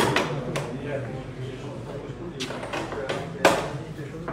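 Sharp clacks of billiard balls in a billiard hall: one right at the start and an equally loud one about three and a half seconds in, with a few fainter knocks between, over low background voices.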